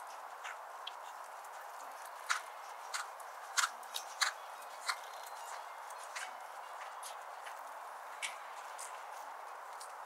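Horse trotting in a sand dressage arena: scattered short clicks of hooves and tack, irregularly spaced and clustered in the first half, over a steady outdoor hiss.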